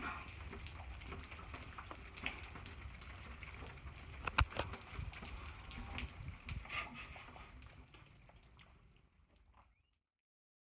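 Rain pattering, with scattered drops ticking and one sharp click about four seconds in; the sound fades out near the end.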